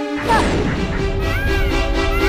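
Cartoon landing sound effect: a sudden crash just after the start, trailing into a low rumble that dies away over about a second and a half, over background music.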